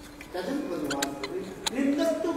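A man's voice speaking after a short pause, with two sharp clicks in the room.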